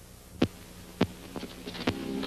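Two heavy thumps a little over half a second apart, then a few lighter, quicker hits, over a low steady hum: the opening beats of a film soundtrack that goes straight on into guitar music.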